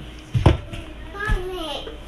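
A single sharp knock about half a second in, then a child's high voice calling out briefly with a bending pitch.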